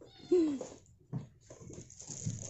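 A cat meowing once, a short call that rises and then falls in pitch, followed about a second later by a brief knock.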